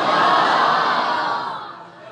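A crowd of men calling out together in appreciation of the Quran recitation. The shout swells at once and dies away within about a second and a half.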